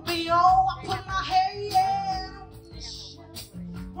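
A live band performance: female vocalists singing long, wavering notes together over drums, electric bass and keyboard. The singing is loudest in the first half and eases off briefly about three seconds in.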